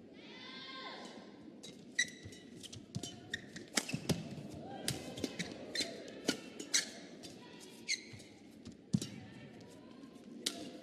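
Badminton rally: irregular sharp strikes of rackets on the shuttlecock and footfalls on the court, with short high squeaks of shoes on the court mat.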